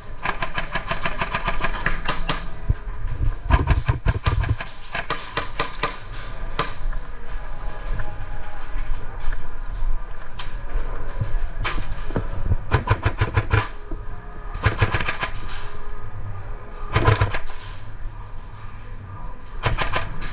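Airsoft electric guns firing rapid full-auto bursts, a fast rattle of shots repeated several times.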